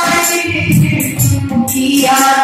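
A woman sings a faguā (Bhojpuri Holi folk song) into a microphone, accompanied by a steady beat of jingling hand percussion and low drum strokes.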